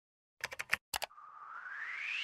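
Sound effects of a TV station logo animation: a quick run of computer-style clicks in two groups, then a whoosh that rises steadily in pitch.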